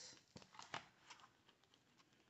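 Near silence, with a few faint clicks and light rustles in the first second or so from clear plastic envelope pockets in a ring binder being handled.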